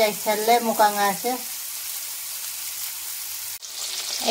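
Small whole fish frying in hot oil in a wok: a steady sizzle. A person's voice runs over it for about the first second, and the sizzle drops out briefly near the end.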